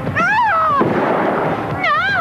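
A woman's high scream rising and then falling, followed by a loud rush of noise, then a second high scream near the end, a young girl's.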